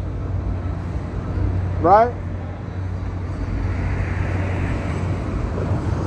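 Steady low rumble of city street traffic. One vehicle passes in the second half, a swell of noise rising and fading from about three and a half to five and a half seconds in.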